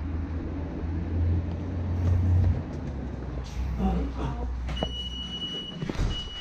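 Low rumble of city street traffic, loudest in the first half. About five seconds in, a steady high-pitched electronic tone starts and holds.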